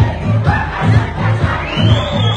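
Loud dance music with a steady bass beat, with a crowd of women's voices raised over it.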